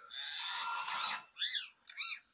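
A harsh, noisy sound lasting about a second, then a pet rose-ringed parakeet gives two short calls that rise and fall in pitch, one shortly after the midpoint and one at the very end.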